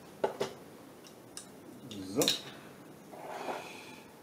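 Light clicks and taps of small tools being handled on a wooden table, two sharp clicks close together just after the start, then a short scraping rustle near the end as a fibre-optic cleaver is brought into place.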